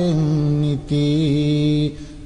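A man's voice chanting Sinhala Buddhist verse (kavi bana) in long, drawn-out sung notes that glide gently in pitch. The phrase breaks briefly a little under a second in.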